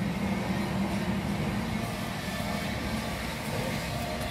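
Steady low rumble of a motor vehicle, with a low hum that fades out about two seconds in.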